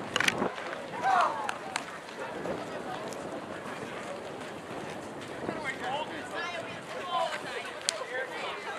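Scattered shouts from players and spectators at a ballfield over a steady outdoor murmur, with a few sharp claps in the first couple of seconds.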